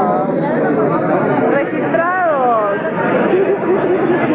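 Many people talking at once in a room, a steady hubbub of conversation, with one voice rising and falling in pitch about two seconds in.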